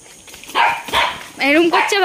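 A dog barking several times, starting about half a second in and coming thicker near the end, mixed with people's voices.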